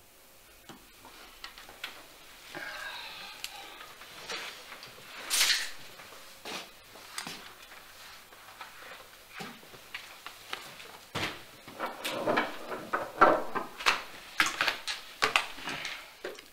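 Small objects being handled at a table: rustling, a short sliding scrape and a louder swish, then a dense run of quick clicks and rustles in the last few seconds as playing cards are handled.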